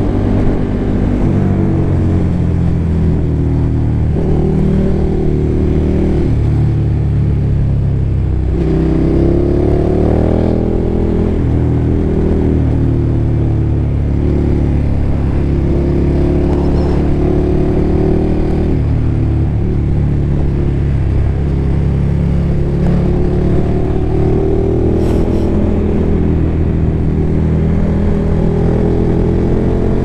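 KTM motorcycle engine under way, its pitch rising and falling with the throttle, with a dip and a fresh climb in revs about eight seconds in as it shifts and pulls again. Heard through a helmet microphone.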